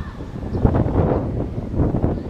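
Wind buffeting the microphone: a loud, irregular low rumble that swells and dips in gusts, strongest about two-thirds of a second in and again near the end.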